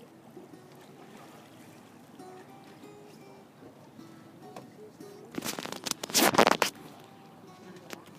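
Faint acoustic guitar notes, picked one at a time. A little past the middle a loud rush of noise lasting about a second and a half cuts across them.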